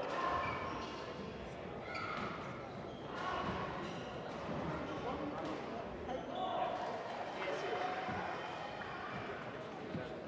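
Indistinct voices and chatter echoing in a large sports hall, with scattered light taps and thuds.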